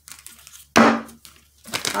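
A deck of oracle cards being handled and shuffled: papery rustling and light clicking of card stock, with one loud swish of the cards a little under a second in.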